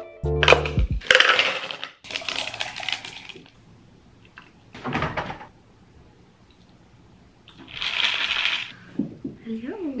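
Ice cubes clattering into a plastic cup and liquid poured over them, in a few short rattling bursts with quiet between. Light music fades out at the start.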